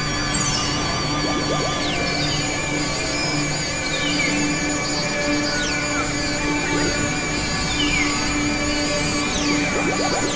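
Experimental electronic drone music from synthesizers: many held tones layered together over a low note that pulses on and off, with warbling high tones and slow falling pitch sweeps every couple of seconds. Near the end, a flurry of short quick glides comes in.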